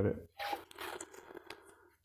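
Vinyl electrical tape being peeled off its roll, in two short pulls.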